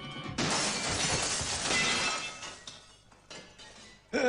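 Cartoon sound effect of glass shattering: a sudden crash about half a second in, with tinkling that dies away over about two seconds, over background music.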